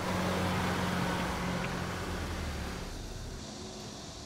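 A car engine running as a white SUV drives up and pulls in, its low hum steady at first and fading away about three seconds in.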